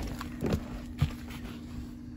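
Handling noise inside a car cabin: a couple of soft knocks and rustles as someone shifts about in the back seat with the phone, over a steady low hum.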